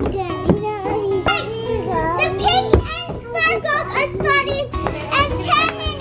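Young children's high voices, calling out and sing-song, over music with held notes.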